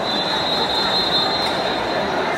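A swimming referee's whistle blown in one long steady blast of about two seconds, high-pitched, over the murmur of a crowd in a large pool hall. It is the long whistle that calls swimmers up onto the starting blocks before a race.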